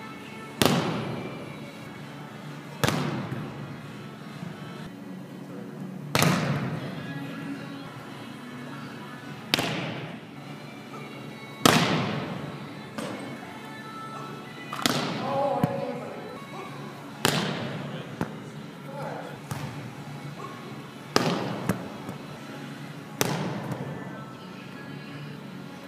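A volleyball struck hard by hand in a spiking and blocking drill. There are about nine sharp slaps, one every two to three seconds, each ringing on in a large hall.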